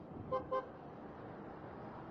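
Vehicle horn tooted twice in quick succession, two short beeps about a fifth of a second apart, over steady road noise in traffic.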